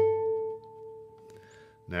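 A single note plucked on a nylon-string flamenco guitar, ringing out and slowly fading for nearly two seconds.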